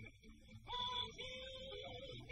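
Alto saxophone solo over a jump-blues band, ending on a long held note in the second half.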